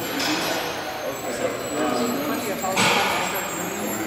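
Indistinct voices of people talking in a large room, with a brief louder noise about three seconds in.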